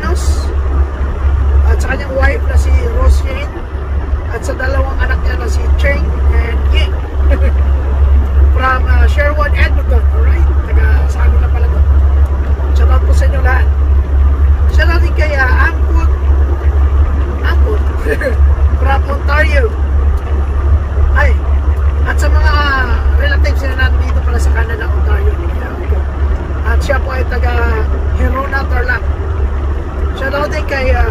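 Semi-truck's diesel engine running with a steady low rumble, heard from inside the cab.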